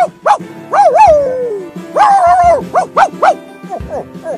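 A voiced cartoon dog yipping and whining over background music with a steady beat: two short yelps, a long falling whine about a second in, a held call, then three quick yips.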